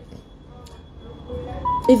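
A short, faint tune of a few held notes rising in pitch, about a second and a half in, during a pause in speech, over a faint steady high whine.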